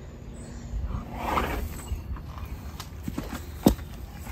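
A horse blowing out a long breath about a second in, followed by a few light knocks and one sharp click near the end.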